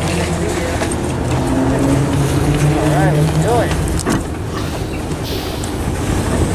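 A diesel city transit bus runs beside the camera at the stop, its engine a steady low hum under wind noise on the microphone. There is a short hiss about five seconds in.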